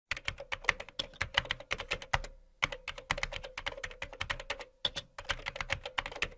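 Typing sound effect: rapid keystroke clicks, about seven a second, with two brief pauses, accompanying on-screen text being typed out.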